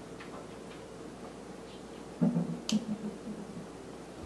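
Faint ticks of a marker pen writing on a whiteboard, then a brief low voiced sound a little after two seconds in, followed by a single sharp click.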